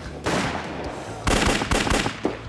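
Handgun fire: one shot just after the start, then a quick run of several shots in the second half.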